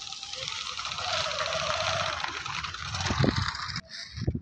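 A 2012 Bajaj Discover 125's single-cylinder four-stroke engine running as the motorcycle rides out over a dirt track, with a steady low putter and a hiss on top. The sound cuts off suddenly near the end.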